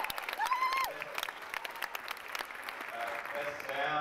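Cinema audience applauding and cheering, with a whoop about half a second in. Voices start to come through near the end.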